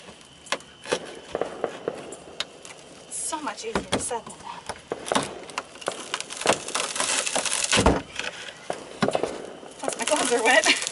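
A hand blade scraping and prying debris out of the joint along a fiberglass boat hull, with many short cracks and knocks as pieces break away and a denser stretch of scraping a few seconds before the end.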